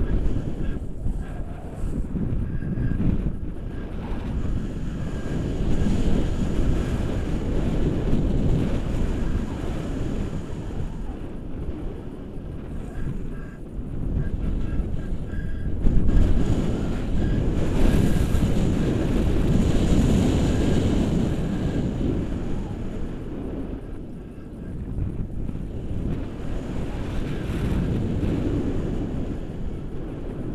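Airflow buffeting the microphone of an action camera on a paraglider in flight, a steady rush that swells and eases in gusts every few seconds.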